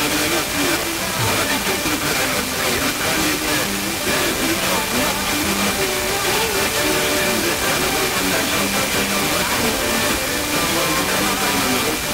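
Long-distance FM broadcast on a Blaupunkt car radio tuned to 87.7 MHz: music with singing heard through heavy static hiss. A faint steady high tone runs under it.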